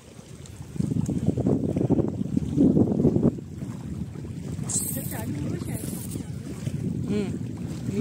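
Wind buffeting the microphone, a loud, gusty low rumble for the first few seconds that then drops to a softer steady rush.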